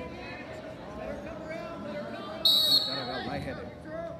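Spectators talking over each other in a large gym, with a short, loud blast of a referee's whistle about two and a half seconds in.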